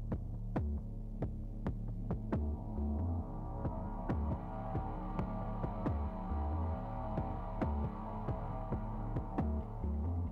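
Low, pulsing electronic background music: a throbbing bass line that steps between notes under a steady ticking beat of about two ticks a second.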